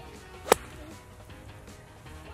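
A golf club striking the sand in a bunker explosion shot: one sharp thwack about half a second in. Background music plays underneath.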